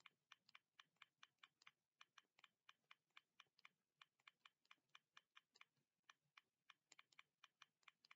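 Faint, quick clicking of keys being typed, several clicks a second in uneven runs with short pauses.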